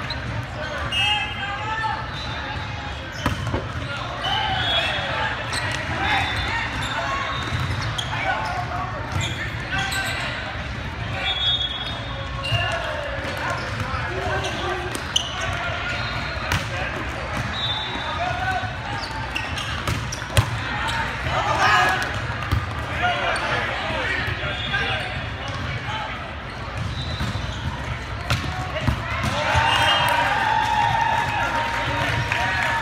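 Volleyball play in a large, echoing sports hall: sharp slaps of hands and arms hitting the ball, the loudest about twenty seconds in, over steady chatter and calls from players and spectators.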